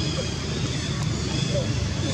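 A steady low rumble of the kind a motor makes, with faint, indistinct voices over it.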